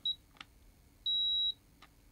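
Handheld infrared thermometer giving one steady, high-pitched beep about half a second long, starting about a second in, which signals that it has taken a surface-temperature reading. Faint clicks come just before and just after the beep.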